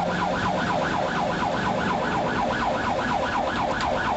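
Police car siren in fast yelp mode: a rapidly repeating wail sweeping between high and low pitch about six or seven times a second.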